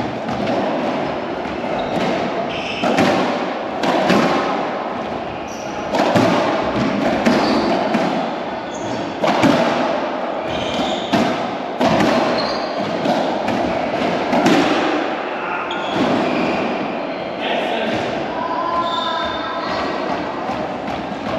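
Racquetball rally: a string of sharp, irregularly spaced hits as racquets strike the ball and the ball bangs off the court walls.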